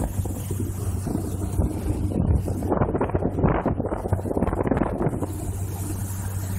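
Boat engine running with a steady low drone, under irregular gusts of wind buffeting the microphone.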